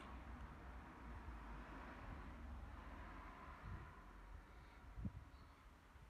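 Near silence: faint hiss and low rumble, with a soft bump about five seconds in.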